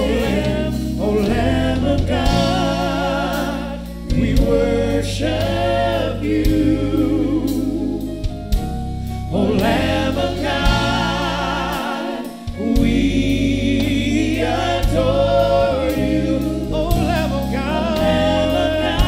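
Live gospel worship song: several singers on microphones holding long notes with vibrato, backed by drums and keyboard.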